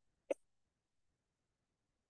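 Near silence, broken once by a single brief throat sound from a man about a third of a second in.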